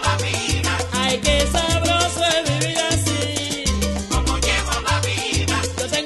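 Salsa band playing: a repeating bass line under steady, dense percussion, with pitched instruments above.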